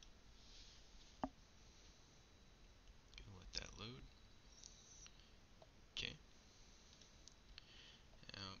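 Near silence broken by a few computer mouse clicks, a sharp one about a second in and another about six seconds in, with a short low vocal sound from the narrator around three and a half seconds.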